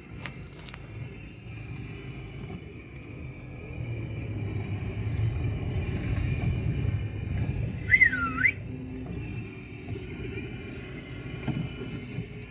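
Car engine idling, a steady low rumble heard from inside the cabin. About eight seconds in comes a short whistle that rises and falls in pitch.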